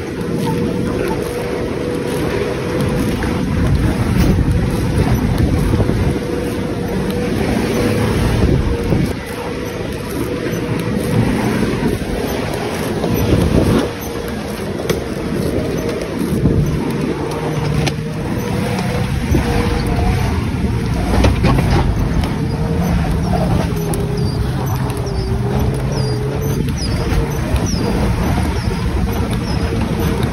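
A beater car driving hard over a rough dirt trail, heard from on board: the engine runs steadily under load with a steady whine, there are frequent knocks from the body and suspension, and wind buffets the microphone.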